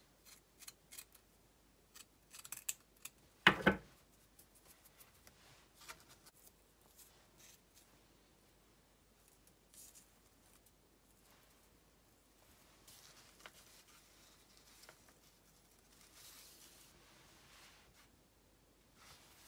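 Scissors snipping through a small piece of burlap: a run of short, crisp cuts in the first few seconds, the loudest about three and a half seconds in. After that come only faint rustles as the burlap and paper are handled.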